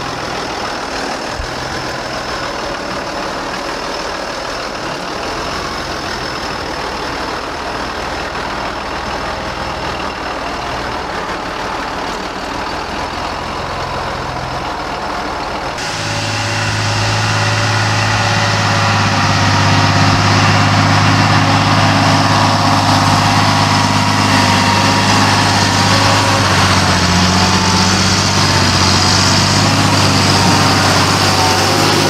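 John Deere tractor's diesel engine running steadily. After a cut about halfway, a deeper steady engine note grows louder over a few seconds as the tractor drives up the track towards the microphone.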